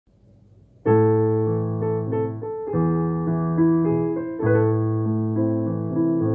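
Piano playing a slow introduction of held chords, starting about a second in and changing every second or two.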